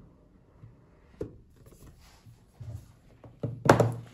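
Cardboard lid of a Mac mini box being lifted off its base and set down on a wooden table: a light click about a second in, soft rubbing of card on card, then a louder scrape and thunk near the end as the lid comes down.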